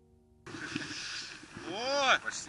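A faint tail of background music, then an abrupt cut about half a second in to open-air sound on a snow slope: a steady rushing noise of wind and snow on the camera microphone. Near the end a person's voice calls out once with a rising-then-falling pitch.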